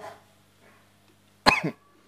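A person's single short cough about one and a half seconds in, over a faint steady low hum.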